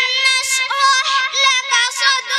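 A young girl reciting the Quran (tilawat) in a melodic chant into a microphone, drawing out long held notes with a slight waver.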